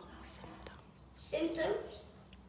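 A child's voice: a short spoken phrase in the second half.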